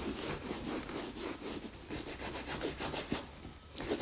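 A leather-cleaning wipe rubbed quickly back and forth over a vintage Louis Vuitton Speedy handbag, a fast run of short scrubbing strokes that dies away shortly before the end.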